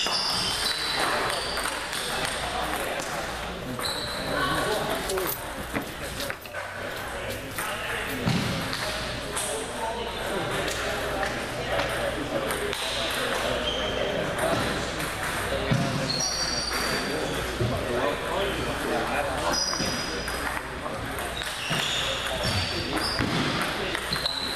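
Table tennis balls clicking off paddles and bouncing on tables in rallies, short sharp ticks coming in runs, over a steady murmur of voices in a large, echoing gym hall.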